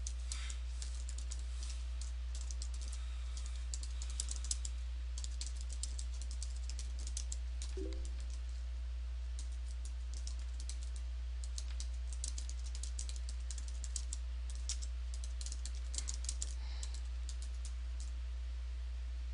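Typing on a computer keyboard: runs of quick keystrokes broken by short pauses, over a steady low hum.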